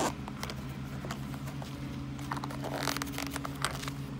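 Zipper of a zippered hard-shell knife case being pulled open by hand, heard as short runs of quick faint ticks in the second half, over a steady low hum.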